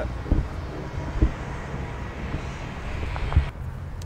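Wind on an outdoor microphone: a steady low rumble and haze, with three short low thuds.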